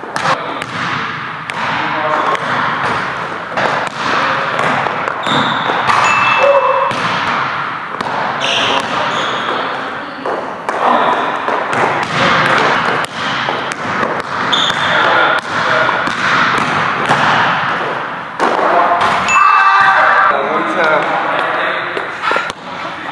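A basketball bouncing on an indoor gym court in a one-on-one game: repeated sharp thuds that echo in the large hall, with short high sneaker squeaks a few times.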